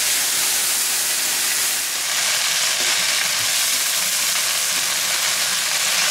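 Black rice and vegetables sizzling in a hot oiled frying pan as a wooden spatula stirs them through, a steady frying hiss.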